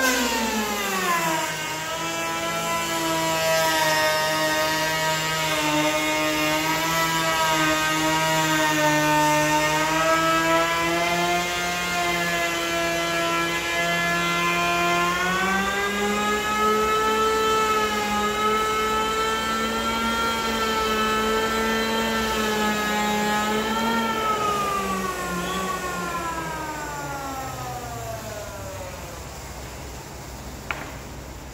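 Electric hand planer cutting across a pine tabletop, its motor whine dropping in pitch as the blades bite into the wood and then holding under load. About halfway through the pitch steps up, and over the last few seconds the whine falls steadily and fades as the planer winds down.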